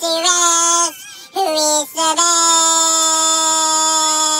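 A high, child-like singing voice in a song. It sings a few short notes, then holds one long note from about two seconds in.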